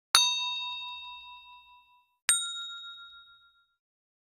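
Two bell-like dings of a title-card sound effect, about two seconds apart, each struck sharply and ringing out as it fades; the second is at a different pitch and dies away sooner.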